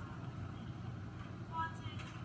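Faint, high-pitched voices, like children talking in a classroom recording being played back, over a steady low hum, with one louder voice near the end.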